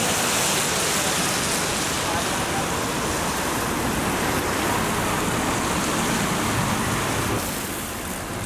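Steady hiss of a wet street: traffic on wet road and rain, with faint voices under it. It eases a little near the end.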